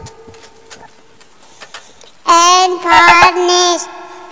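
A child's singing voice sings a short phrase of one or two words, starting about two seconds in and lasting about a second and a half, after a quiet stretch.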